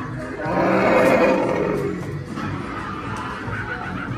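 A Halloween animatronic werewolf playing its recorded roar: one rough roar about a second and a half long, starting about half a second in, over background music.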